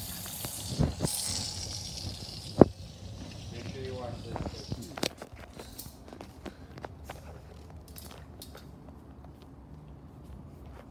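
Water running from a kitchen tap into the sink for the first couple of seconds, then a single sharp knock about two and a half seconds in. After that come scattered light clicks and taps, with a brief voice.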